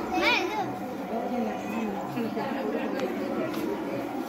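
Many people talking at once, with a child's high-pitched call standing out just after the start.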